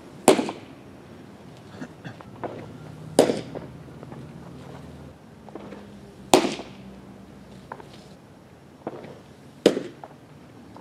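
Baseballs popping into a catcher's mitt: four sharp pops about three seconds apart, each ringing briefly off the wall behind.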